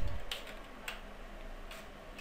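A handful of faint keystrokes on a computer keyboard, spaced out, as a line of code is typed.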